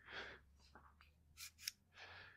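Near silence with two faint metallic clicks about a second and a half in, from a steel dial caliper being handled.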